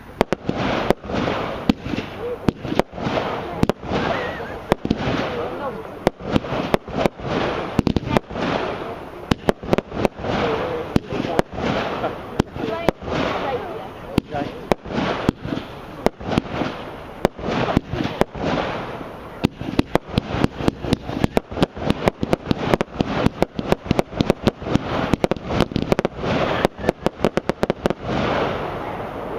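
Brothers Pyrotechnics Magneto Burst 49-shot firework cake firing. Shot after shot goes off, each a sharp bang about one or two a second, with a continuous noisy rush between them. The shots come much faster as a rapid closing volley over the last several seconds.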